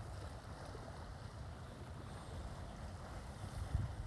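Faint outdoor seaside ambience: a low, steady wind rumble on the microphone with a soft, even wash of the sea.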